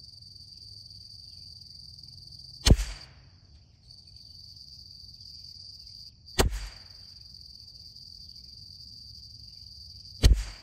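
.22 LR rimfire rifle firing two single shots, about three and a half seconds apart, each a sharp crack that is the loudest thing heard. Between them runs a steady high-pitched insect drone, typical of crickets.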